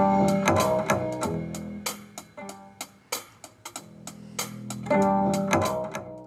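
Multitrack song playing back from the DAW, with bass guitar, guitar and drums with hi-hat. The bass track's volume follows freshly written fader automation: the music dips in level through the middle and comes back up about five seconds in.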